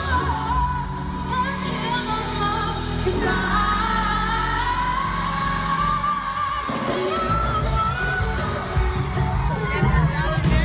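Live pop concert music: a female lead singer holding long sung notes over a band with a steady bass, heard through the arena sound system. The bass drops out briefly about six and a half seconds in.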